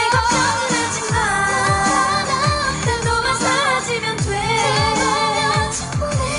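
K-pop dance track performed by a girl group: female vocals over a beat with deep, downward-sliding bass hits about twice a second.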